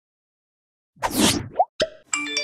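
Cartoon-style outro sound effects: after about a second of silence, a short swish, then a quick rising plop and a sharp click near the end.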